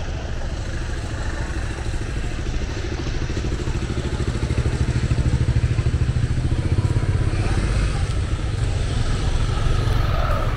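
Motor scooter engines running at low speed close by, getting louder as the scooters come up, loudest in the middle of the stretch.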